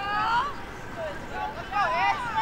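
Several voices shouting and calling out across an open sports field, overlapping at the start, easing off mid-way and rising again near the end.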